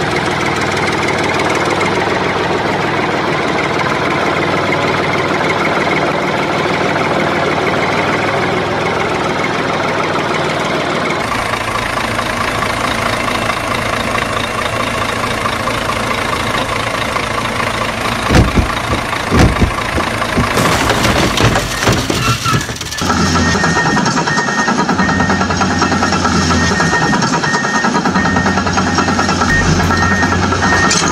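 Steady engine idling sound, like a truck engine, that shifts character twice, with a few loud knocks a little past the middle.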